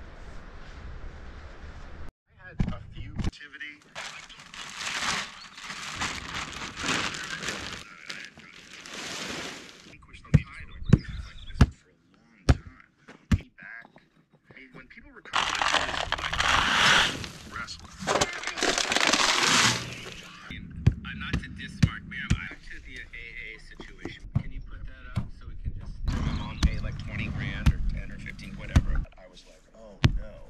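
Gravel and rock being poured from a plastic bucket and shoveled into tires. There are several noisy pours of a few seconds each, the longest about halfway, with scattered knocks and clinks of stone between them.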